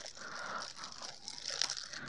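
Thin plastic packaging bags crinkling faintly as hands pull them open.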